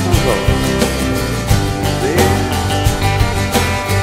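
Background music: a country-style tune with plucked guitar over a steady beat.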